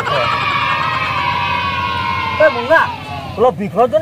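A person's voice holding one long note that falls slightly for about two seconds, then breaking into short voice sounds that swoop up and down.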